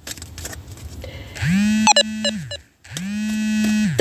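A person's voice holding two long, level "ummm" hesitation hums at one steady pitch, each about a second long. The first starts about a second and a half in, and the second follows after a short pause.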